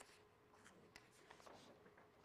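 Near silence: quiet room tone with a few faint scratches and light ticks.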